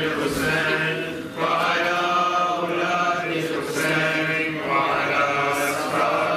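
A man chanting a devotional prayer in a melodic voice, in long held phrases with short breaks for breath about a second and a half in and again past the middle.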